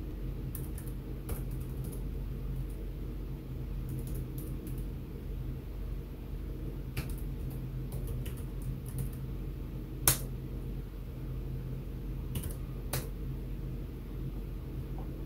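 Computer keyboard keys tapped unevenly, a few keystrokes at a time, as a shell command is typed out, with one louder keystroke about ten seconds in. A steady low hum runs underneath.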